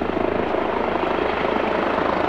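Helicopter overhead, its rotor blades beating in a steady, rapid chop.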